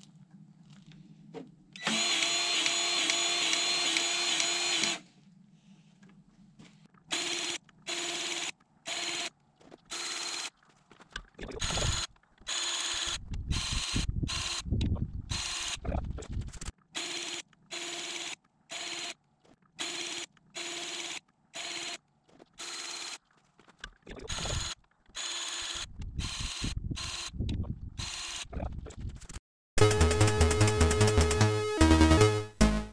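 Cordless battery grease gun's motor running as it pumps grease into the plough's grease fittings until grease comes out. One steady run of about three seconds, then many brief runs that start and stop abruptly.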